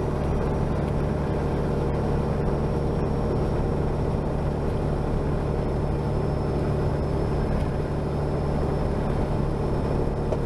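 Peterbilt 379's Caterpillar C15 diesel engine running steadily at highway cruise, a constant drone mixed with tyre and road noise, heard from inside the cab.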